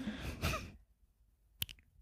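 A faint breathy exhale, like a sigh, then silence broken by a single short, sharp click about a second and a half in.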